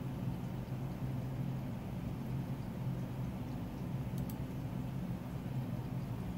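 A steady low hum over a faint hiss, with two faint clicks about four seconds in.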